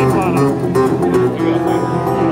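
Acoustic guitar and bass guitar playing together live, a busy run of plucked and strummed notes with a few sharp strikes.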